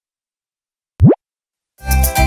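A single short cartoon 'bloop' sound effect about a second in: a quick upward pitch sweep after a second of silence. Background music starts just before the end.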